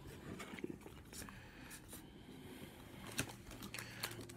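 Faint rustling and light taps of trading cards and a foil card pack being handled, with a couple of sharper ticks near the end.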